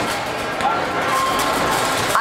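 Crowd chatter with faint carousel music underneath, steady throughout.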